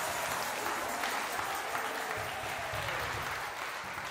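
Applause from a group of people just after the song ends, with a few voices among it, slowly dying away.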